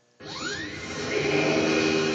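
Spider-Man pinball machine's speakers playing a game sound effect after a brief silent gap: a rising electronic sweep about a quarter second in, then a steady held synth tone.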